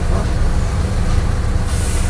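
A steady low rumble with a brief high hiss near the end.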